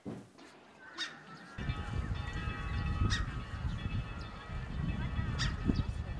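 Outdoor schoolyard sound of many children's distant overlapping voices and calls, with a low rumble underneath, starting a little over a second in.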